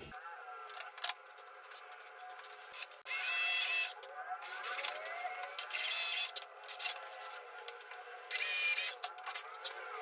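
Cordless drill boring into a wooden slab in three short runs of about a second each, each with a steady high whine. Light knocks and rubbing come between the runs.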